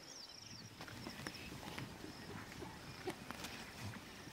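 Faint bush ambience: a thin, high insect trill with scattered soft clicks and knocks.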